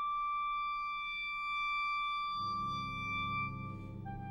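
Wind ensemble playing a slow, quiet passage: a single high note held steady, joined at about two and a half seconds in by a low sustained chord in the lower instruments.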